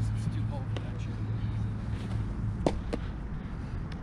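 A fastball of about 86–87 mph popping into a catcher's mitt once, a single sharp, loud smack about two-thirds of the way through, followed by a smaller click.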